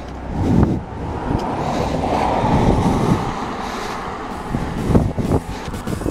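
Bicycle ridden along a concrete sidewalk, heard through a camera mounted by the front wheel: steady rushing road and wind noise, with a few thumps about half a second in and again near five seconds.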